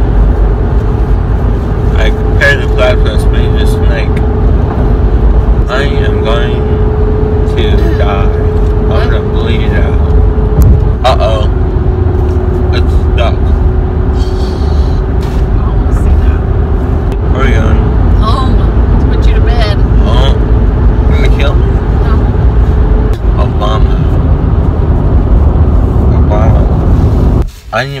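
Road and engine noise inside a moving car's cabin: a heavy steady rumble with a droning hum that dips slightly in pitch partway through, under muffled, indistinct mumbling; the rumble cuts off near the end.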